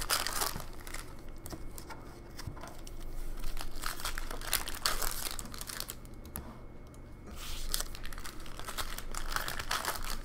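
Wrappers of Upper Deck hockey card packs crinkling and tearing as packs are ripped open and the cards handled, in a steady run of crackling that eases off for about a second a little past halfway.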